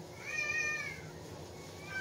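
An animal's high-pitched, drawn-out call that rises and then falls, lasting under a second, with a second, shorter call starting near the end.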